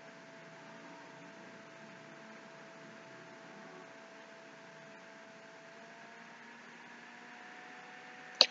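Near silence: room tone of faint, even hiss with a thin steady hum.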